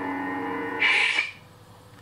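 Proffie-board lightsaber's sound font playing through the hilt speaker: its steady electronic hum, then about a second in a short retraction sound as the NeoPixel blade is switched off, after which the hum stops.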